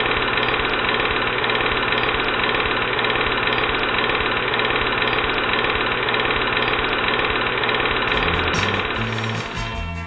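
Film projector running with a steady, rapid mechanical clatter. Music with a bass line comes in about eight seconds in.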